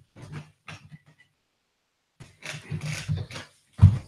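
Handling noise from a handheld microphone as it is passed from one man to another. It comes as irregular rustles and bumps, with a longer stretch of rubbing past the middle and a sharper knock near the end.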